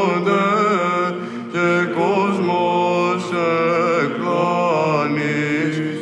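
Byzantine chant in plagal fourth mode sung by Athonite monks: male voices carry a melody that moves and turns over a steady held drone (the ison).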